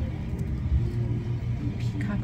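Steady low rumble of outdoor background noise, with a faint hum above it.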